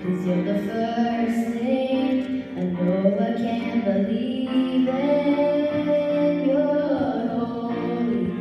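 Girls singing a song together into microphones, held notes moving in pitch, with electronic keyboard accompaniment.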